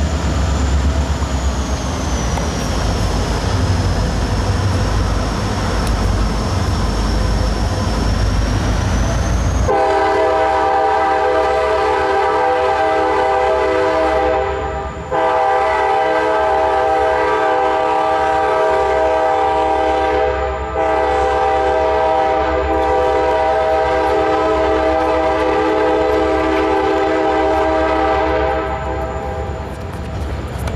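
A loud, steady horn chord starts suddenly about ten seconds in, after a low rumble and hiss. It holds in long blasts with two brief breaks and fades near the end.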